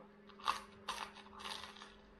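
A person biting into and chewing a crisp toasted pizza sandwich: the toast crunches several times in short bursts.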